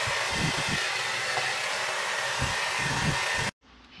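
Hand-held hair dryer blowing at close range while a round brush works through the hair: a loud, even rush of air with a faint steady whine in it. It cuts off suddenly about three and a half seconds in.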